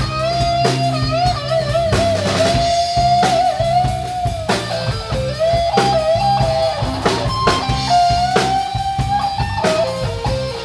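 Live blues-rock band playing: an electric guitar lead with long bent notes that waver, over a drum kit keeping a steady beat.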